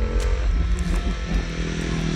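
A Harley-Davidson X440's single-cylinder engine running as the motorcycle is ridden. The note shifts in pitch early on, then holds steady.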